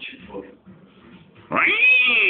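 A cat meowing: one long, drawn-out call that starts sharply near the end, rising and then slowly falling in pitch.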